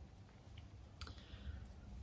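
A few faint clicks, the clearest about a second in, as a knitted piece on its needles is handled and lifted up.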